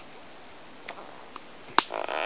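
Wood campfire crackling in a quiet pause: two faint ticks, then one sharp, loud pop near the end.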